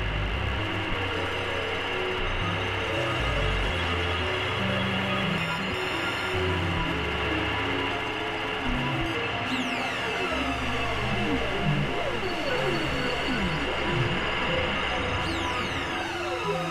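Experimental electronic synthesizer music: a dense, noisy drone over shifting low bass notes, with falling pitch glides about nine seconds in and again near the end.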